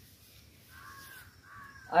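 Two faint crow caws, each a short arched call, about a second apart.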